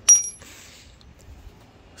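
A steel bolt dropped onto a concrete floor: one sharp metallic clink with a short, high ring.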